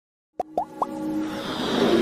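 Electronic intro sting: three quick rising plops, then a synth swell that builds steadily in loudness.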